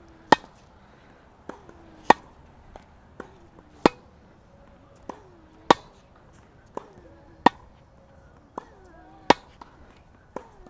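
Tennis balls struck by racquets in a rally: a sharp pop about every two seconds from the near racquet, with fainter pops from the far racquet and ball bounces in between.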